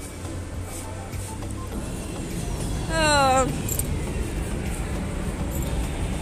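Steady low rumble of metro station background noise, with a short voice calling out, falling in pitch, about three seconds in.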